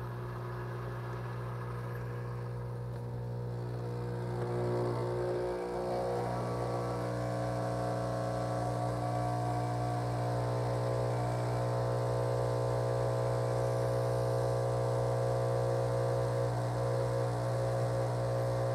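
Espresso machine pump humming steadily while it pushes water through the coffee puck during a shot, growing a little louder about five seconds in. The grind is too fine, so the shot runs slow.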